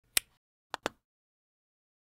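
Three sharp clicks in an outro logo sound effect: one just after the start and a quick pair just under a second in, followed by dead silence.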